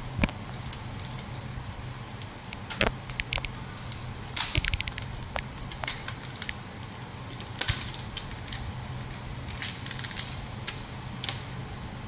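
Protective plastic film being peeled off a new Samsung Galaxy Z Flip 4, first from the screen and then from the back: scattered sharp crackles and clicks with a few short rasping tears, over a steady low hum.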